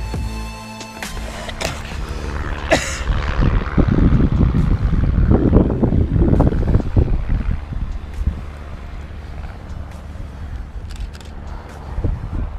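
Electronic background music that cuts off about a second in, followed by wind buffeting the microphone in irregular gusts, heaviest in the middle, with a few light clicks near the end.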